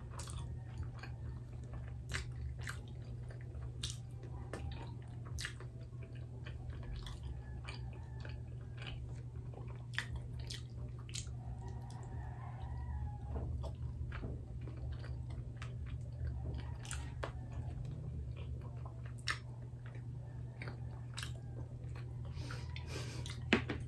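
Close-miked chewing of sticky steamed rice cakes (kutsinta and puto), with many scattered, irregular sharp mouth clicks. A steady low hum runs underneath.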